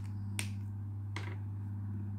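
A steady low hum with two short sharp clicks, the louder one just under half a second in and a fainter one under a second later.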